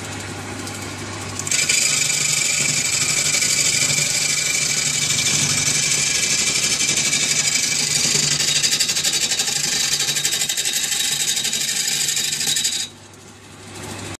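Benchtop wood lathe motor running with a low hum while a hand-held turning chisel cuts a spinning firewood cylinder, a loud, even scraping that starts about a second and a half in. The cutting stops about a second before the end, leaving the motor hum.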